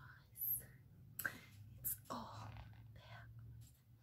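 A woman whispering softly and faintly, broken into short breathy bits, with a few small clicks between them.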